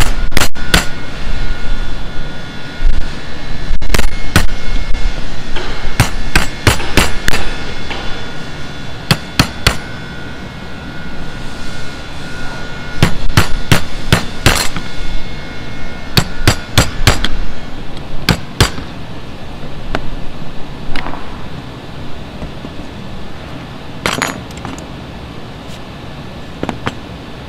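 Hammer blows on a steel punch held upright in the top of a wooden hand-plane body. The sharp taps come in quick clusters of two to five every few seconds, with a faint metallic ring between some of them, and thin out toward the end.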